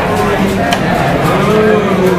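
Several overlapping voices from a class of students, drawn out and talking over one another, with a few light chalk taps on the blackboard.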